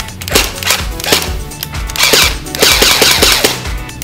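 H&K MP7 airsoft electric gun (AEG) test-fired with its magazine out, its battery-driven gearbox cycling: a few single shots, then rapid full-auto bursts in the second half. The firing shows that the newly connected battery works.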